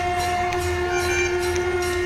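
Background music: one sustained drone note held at a steady pitch under a light, even beat.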